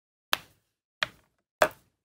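Three light, sharp knocks of plastic alcohol markers and their caps being handled and set down on the craft mat, spaced a little over half a second apart.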